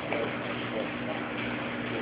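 Steady low hum under a constant hiss, with faint voices in the background.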